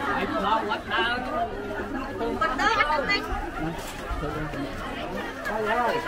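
Several people talking at once, in Khmer: overlapping conversation and chatter among a close crowd.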